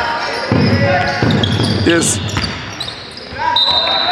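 Basketball bouncing in repeated thuds on a hardwood court, ringing in a large sports hall, with players' shoes on the floor.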